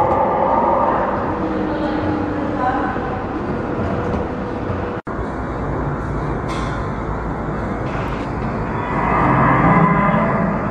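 Steady low rumble of an indoor exhibit hall, with indistinct voices near the start and again near the end. The sound cuts out for an instant about halfway through.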